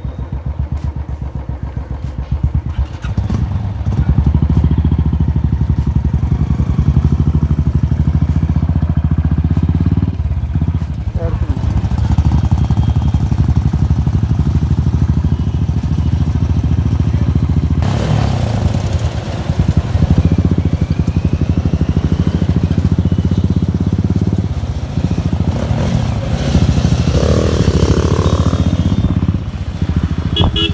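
Motorcycle engine running while riding at low road speed, a steady low pulse that grows louder about four seconds in as the ride gets under way.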